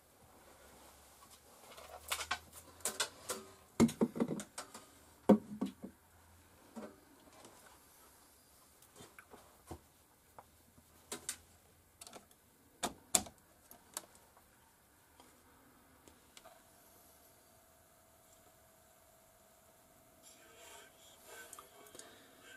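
Scattered clicks and knocks of a headphone jack plug being handled and pushed into a record player's headphone socket, with a faint steady tone in the last few seconds.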